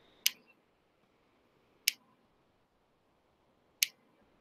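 Three sharp computer mouse clicks, spaced about one and a half to two seconds apart, as a screen-share presentation is closed, with near silence between them.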